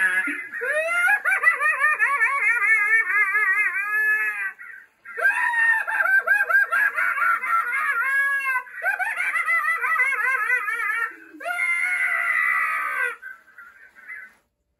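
Spirit Halloween Night Stalker animatronic scarecrow playing its recorded sound effects through its built-in speaker: eerie, wavering screams and cackling laughter in four runs with short breaks between them, ending about a second before the end.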